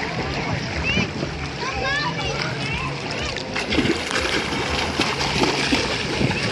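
Shallow sea water sloshing and splashing close to the microphone, with irregular splashes of swimmers in the second half. Distant voices, children's among them, carry over the water.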